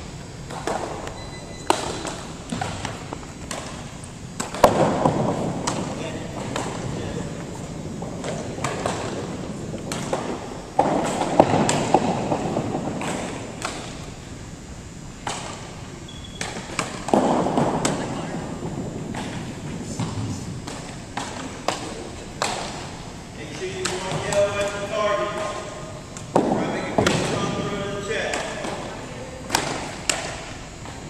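Softballs being thrown back and forth in a gym: repeated sharp knocks and thuds as balls are caught and hit the wooden floor, ringing in the hall. Voices talk in the background, most clearly near the end.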